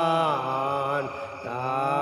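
Soundtrack music led by a chant-like, wordless sung voice: a held note slides down in pitch, softens briefly a little past the middle, then glides back up near the end.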